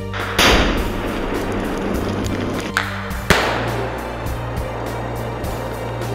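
Two explosive charges set in standing trees detonating about three seconds apart, the first the louder, each followed by a long noisy tail. Background music plays underneath.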